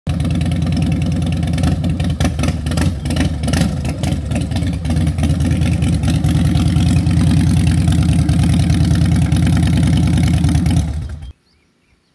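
Harley-Davidson V-twin motorcycle engine running loudly as the bike is ridden off at low speed. The engine sound cuts off suddenly near the end.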